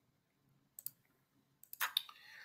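Faint, sharp clicks: a quick pair a little under a second in, then a short, slightly louder cluster near the end.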